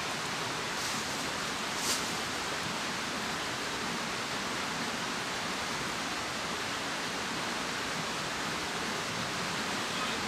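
A mountain stream rushing over rocks, a steady hiss of running water. It briefly swells louder twice in the first two seconds.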